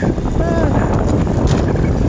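Heavy wind buffeting on the microphone of a moving e-bike, a dense low rumble. A brief voice sound cuts through about half a second in.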